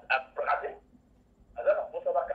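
Speech: a person talking in short bursts of syllables, with a pause of about a second in the middle.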